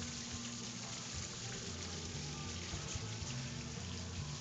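Steady hiss of running water from a garden fish pond, with the low bass notes of distant music from a neighbouring party underneath.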